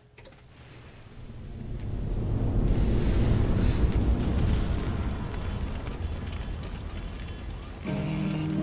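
Intro of a metalcore music video playing back: a low rumbling swell of noise with no clear notes that builds over the first few seconds, peaks around the middle and eases slightly.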